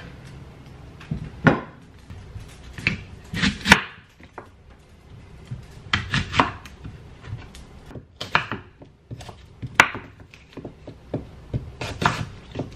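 Kitchen knife slicing apples on a wooden cutting board: irregular knocks of the blade striking the board, in short clusters with pauses between.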